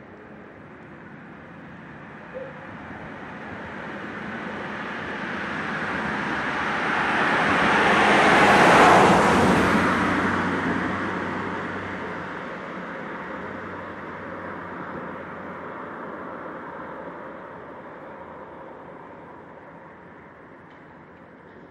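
A road vehicle passing close by: its tyre and engine noise swells steadily to a peak about halfway through, then fades away slowly.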